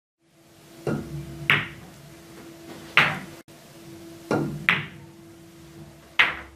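Pool balls clicking: about five sharp clicks in two or three shots, each a cue tip striking the cue ball followed about half a second later by the cue ball hitting an object ball.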